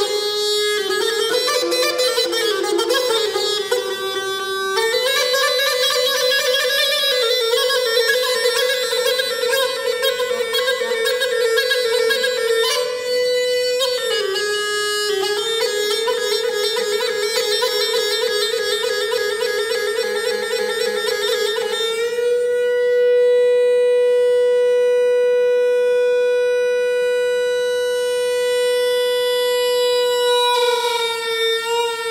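Ney-anban, the Bushehri bagpipe, playing an ornamented melody with a reedy, buzzing tone, then holding one long unbroken note for the last eight seconds.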